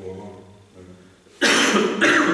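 Faint talk in the room, then about one and a half seconds in a sudden loud cough.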